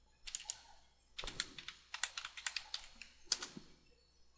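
Typing on a computer keyboard: a couple of keystrokes, then a quick run of about a dozen keystrokes over two seconds, with one louder key stroke near the end.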